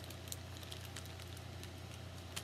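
A small boxed cosmetic product being handled, giving a few faint clicks and light rustles over a steady low hum.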